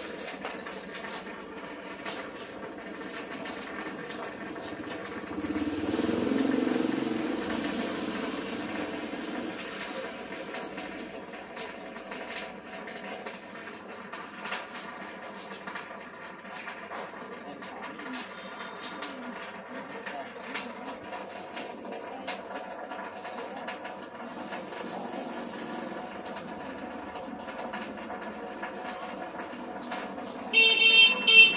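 Busy street-market ambience: a motorbike engine swells past about six seconds in, over a steady hum, indistinct background voices and scattered small knocks and rustles.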